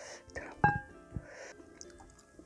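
Close-miked eating sounds from pork-bone soup being eaten, soft mouth and handling noises, over quiet background music. There is one sharp clink with a brief ring just past half a second in.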